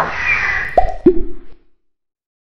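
Animated-graphics sound effects: a short whoosh, then two quick cartoon pops about a quarter second apart, each dropping fast in pitch, the second lower than the first.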